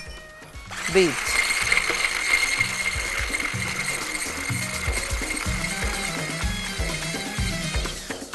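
Electric hand blender with a whisk attachment running steadily, whipping softened butter and powdered sugar in a tall glass jug; the motor starts about a second in.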